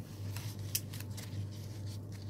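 Folded white ribbon rustling as its pleated loops are pinched and handled, with one sharp click about three quarters of a second in, over a steady low hum.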